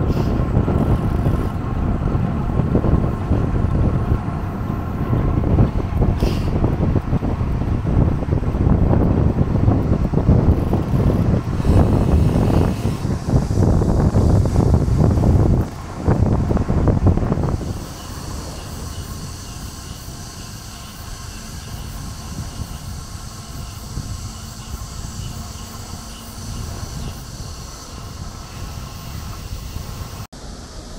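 Wind buffeting a bike-mounted action camera's microphone while cycling, a loud low rumble. About 18 seconds in it drops to a quieter, steady hiss.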